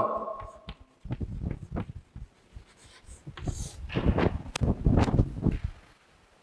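Irregular rustling and soft knocks close to a clip-on microphone as the wearer moves about, with a few sharp clicks.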